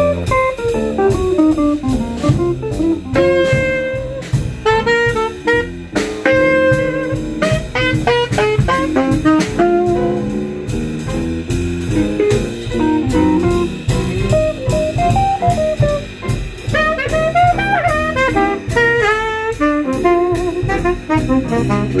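Small jazz band playing a blues, with a fast improvised solo line over bass and drum kit; saxophones and guitars are in the band.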